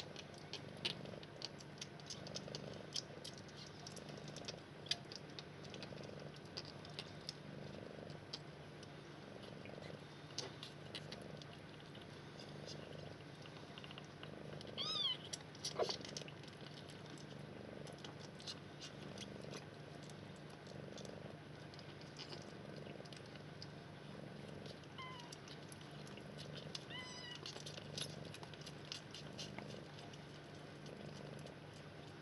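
Soft, steady purring from a Sphynx mother cat nursing her two-week-old kittens, pulsing with each breath, over faint small clicks. Halfway through, a kitten gives a thin, high mew, and near the end two fainter short mews.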